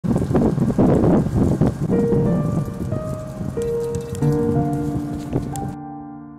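Soft piano music, its first held notes entering about two seconds in, over a dense crackling hiss that stops just before the end.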